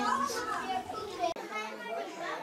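Young children's voices chattering and playing together, with no clear words. The low background hum drops out abruptly a little before the end.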